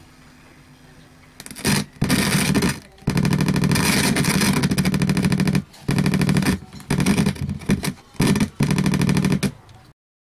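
Loud mains buzz from a home theater amplifier's speaker, cutting in and out abruptly several times as an audio plug is pushed into the amplifier's input jack and makes and breaks contact.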